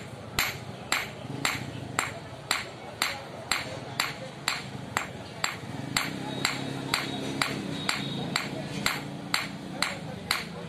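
A hand hammer forging a hot knife blade on an iron block anvil: steady, sharp ringing blows about two a second.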